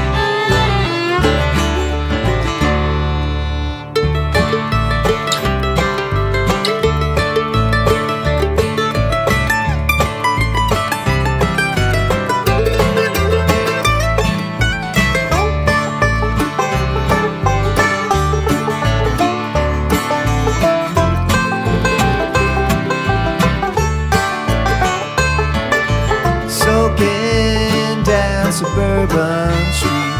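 Instrumental break of a bluegrass band recording, with banjo, fiddle, acoustic guitar and bass playing and no vocals.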